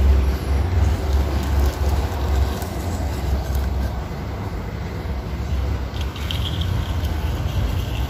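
Small plastic-wheeled toy cars rolling across ceramic floor tiles: a steady low rumble with a rough hiss.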